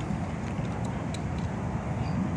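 Steady outdoor background rumble and hiss with no distinct event, in the character of road traffic and open-air noise.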